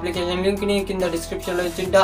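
A man talking over background music.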